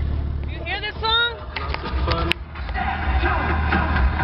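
Car engine running, heard inside the cabin as a steady low rumble, under high-pitched voices and laughter; a single sharp click a little past two seconds in.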